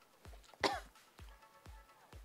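A woman coughs once, short and sharp, about half a second in, over background music with a steady beat.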